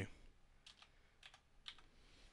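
Faint keystrokes on a computer keyboard: a handful of light key clicks, some in quick pairs, as a web address is corrected and finished.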